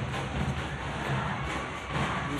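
Basketball arena ambience from a TV broadcast: steady crowd noise with music playing underneath.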